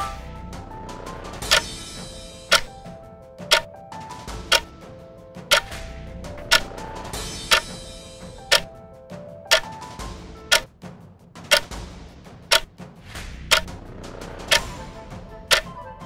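Quiz countdown-timer sound effect: a clock ticking once a second as the answer time runs down, over a soft background music bed.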